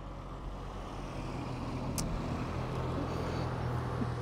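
A vehicle engine's low steady hum, slowly growing louder, with one sharp click about halfway through.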